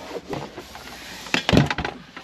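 A quick cluster of sharp knocks and clatters from objects being handled and set down, loudest about one and a half seconds in, after a couple of faint clicks.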